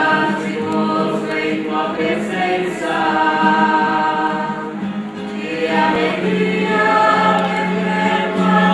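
Group of voices singing a liturgical hymn in a church, holding long sustained notes, with a brief dip about five seconds in.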